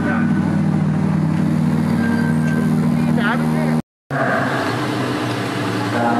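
GT race car engine running steadily at low revs, cut off suddenly about four seconds in. After the cut, voices talk over a background of engine noise.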